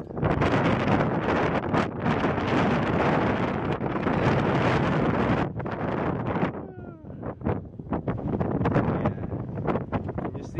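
Wind buffeting the microphone, heavy and continuous for about the first five and a half seconds, then dropping to lighter, uneven gusts. A brief pitched sound cuts through about seven seconds in.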